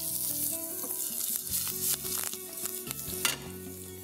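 Chopped garlic and curry leaves sizzling in hot oil in a nonstick kadhai as they are stirred, with a couple of short clicks.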